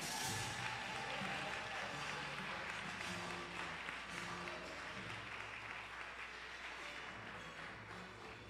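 Congregation applauding after a name is called, the clapping fading gradually, with faint music underneath.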